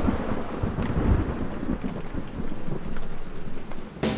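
Thunderstorm: a rolling thunder rumble over steady rain, dropping away near the end.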